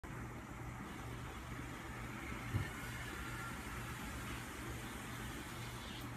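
Steady low hum and hiss of background noise, with one short low thump about two and a half seconds in.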